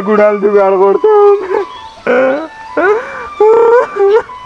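A man crying aloud in anguish: quick, choking sobs for the first second, then long wailing cries that rise and fall, with short breaks between them. A faint, held flute-like note sounds underneath from about a second in.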